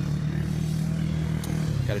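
Speedway motorcycle engine running at steady low revs, dropping slightly near the end.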